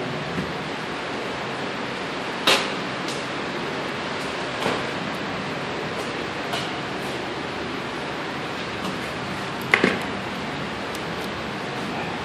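Steady, even rushing noise of the air filtration machines that cycle and filter the air on a lead-abatement floor, with a few light knocks; the loudest is a double knock near the end.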